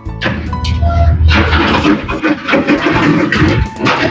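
Background music, with a hissing spray from a handheld sprayer starting about a second in and running for a couple of seconds.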